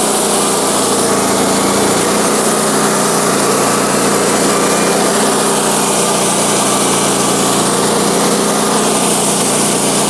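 Wood-Mizer LX150 portable bandsaw mill running steadily, its engine under load as the band blade cuts through a white pine log.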